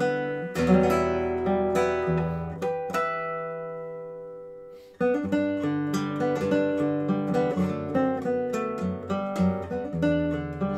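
Milagro R1 cedar-top classical guitar played fingerstyle in a slow melody of plucked notes. About three seconds in, a chord is left to ring and fade away for nearly two seconds. At about five seconds the melody starts again with a fuller bass accompaniment.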